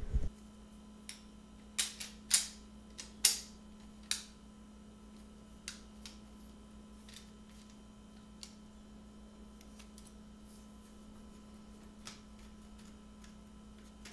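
Small hard clicks and taps of electronic components and a metal faceplate being handled and fitted onto a circuit board, several close together in the first few seconds, then sparser and fainter. A faint steady hum runs underneath.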